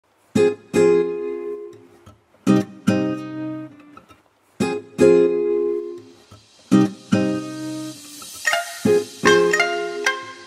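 Background music: a guitar strumming chords in a repeating pattern, two strums about every two seconds, with higher picked notes near the end.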